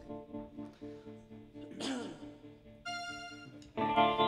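Quiet held tones from the band's amplified instruments between songs. A brief voice sound rises and falls about halfway, a higher tone sounds for under a second near the end, and the instruments come in loud just before the end.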